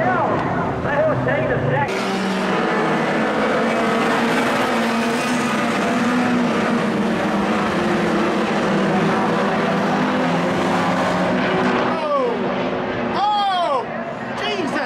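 Several speedway sedan engines running together as a pack races around the dirt oval, starting at a cut about two seconds in and fading near the end.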